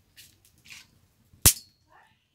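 Two short hissing scrapes, then, near the end, a single loud sharp snap with a brief ringing tail.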